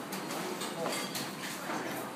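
Restaurant dining-room background: faint distant chatter over steady room noise.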